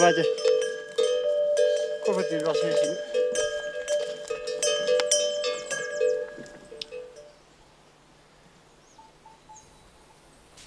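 Singing or a sliding, pitch-bending voice over steady, ringing held tones. The sound fades out about seven seconds in, leaving faint outdoor quiet.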